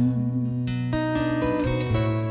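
Acoustic guitars playing an instrumental phrase between sung lines: plucked notes stepping through several pitches, ringing over a low sustained bass note.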